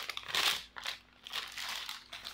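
Crinkling of a bag or wrapping being handled, in several short bursts.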